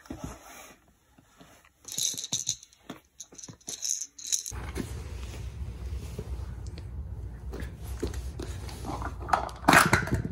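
A baby's plastic ball rattle shaken in two short bursts, a couple of seconds apart. Then a steady low room hum, and near the end plastic stacking cups clatter as a toy tower is knocked over.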